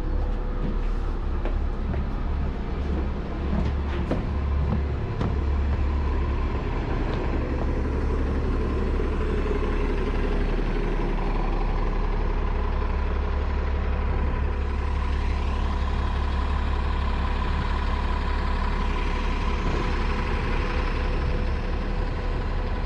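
City transit bus engines running with a steady low rumble, first heard from inside the bus and then from buses at the terminal. A few sharp clicks come in the first five seconds, and a steady high whine joins from about eight seconds in.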